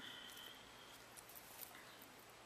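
Near silence: room tone, with a faint high tone in the first second and a few faint clicks.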